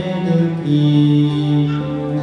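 Live acoustic music: a woman's song accompanied by acoustic guitar, with a long steady low note held from just under a second in.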